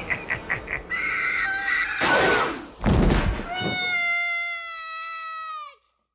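A film soundtrack: Freddy Krueger's laugh ends, then comes a whoosh and a loud thud. A long, high, steady yowling screech follows, drops in pitch at its end and cuts off abruptly.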